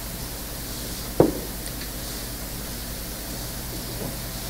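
Steady hiss and low hum of a microphone and amplification system at a speaker's lectern, with a single brief thump about a second in.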